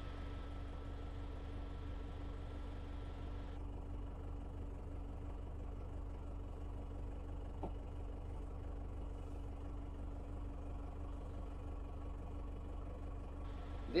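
A tractor's diesel engine idling steadily with a low, even hum, heard from inside the cab. One small click sounds a little past halfway.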